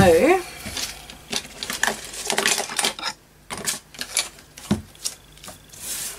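A thin plastic protective sheet rustling and crinkling as it is pressed and smoothed flat by hand, with light taps and scrapes of handling in irregular bursts.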